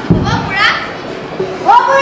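A child's voice speaking loudly and expressively, with a short low thump right at the start.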